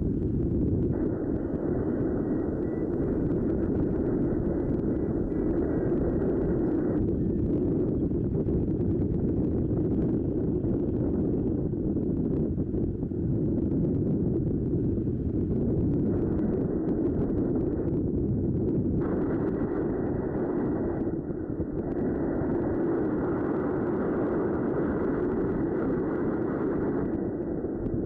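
Wind buffeting the camera microphone: a steady, low rushing noise with no words or music. Its higher part cuts in and out a few times.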